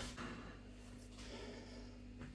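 Faint scraping of a metal spoon against a plastic ready-meal tray, starting with a light tap, over a low steady hum.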